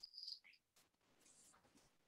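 Near silence: a faint, brief high-pitched tone at the very start, then quiet room tone.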